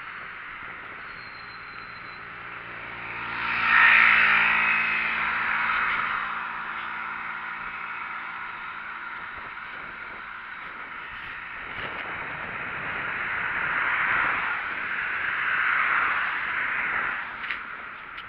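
Steady rushing wind and ride noise on a bicycle-mounted camera, with a motor vehicle's engine passing loudly about four seconds in and fading away. More traffic swells past twice near the end.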